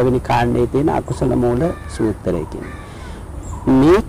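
A man speaking, with a bird calling a few times in the background about halfway through, during a break in his speech.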